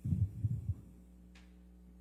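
Three or four quick, low, dull thumps packed into less than a second, over a steady low electrical hum.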